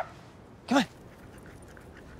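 A dog gives a short, high, rising whimper, and a man calls "come on" to it once.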